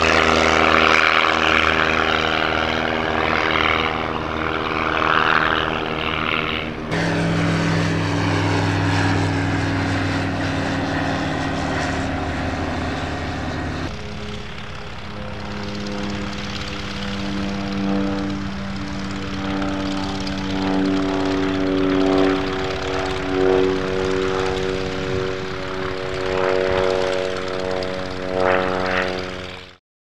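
Propeller engine of an aerobatic biplane in flight, running steadily with sudden jumps in pitch about 7 and 14 seconds in and a slow rise and fall after that. The sound cuts off abruptly just before the end.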